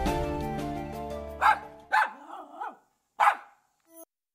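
Background music fades out, then a dog barks three short times, the second bark drawn out with a wavering pitch.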